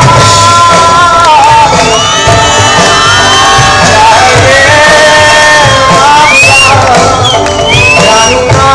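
Live rock band with a male vocalist singing over acoustic and electric guitars, drums and tabla, loud and continuous, with audience shouts mixed in.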